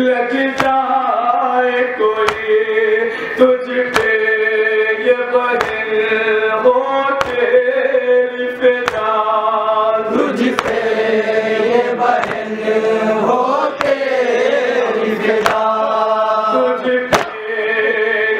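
Male voice chanting an Urdu nauha, a Shia lament, with held, wavering notes. Sharp slaps of matam, hands striking chests, keep a regular beat about every second or so.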